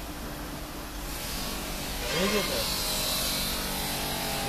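Liquid streaming and splashing off a wire-mesh motorcycle air filter back into a drum as it is lifted out of a rust-removing bath, a steady hiss that builds up from about a second in.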